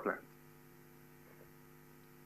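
Faint, steady electrical mains hum: a low buzz of several even tones held at one pitch, heard once the last spoken word fades just at the start.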